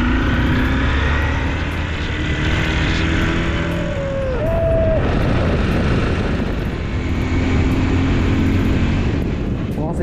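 Motorcycle on the move: wind rushing over the microphone with the engine running underneath, steady throughout. A short held tone rises and then levels off around four to five seconds in.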